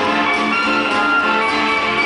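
Quickstep dance music playing, with held melody notes over a steady accompaniment.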